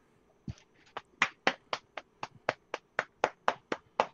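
A person's hands making a quick, even run of about fourteen sharp taps or snaps, about four a second, starting about half a second in.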